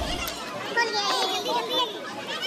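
Children's voices and chatter in a busy crowd, high-pitched and overlapping. Loud music with a heavy beat dies away in the first half-second.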